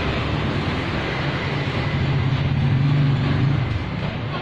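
Steady road traffic noise, with a low engine hum growing louder around three seconds in and easing off just before the end.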